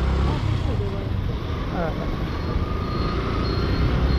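Motorcycle riding through city traffic: a steady low rumble of engine and road noise.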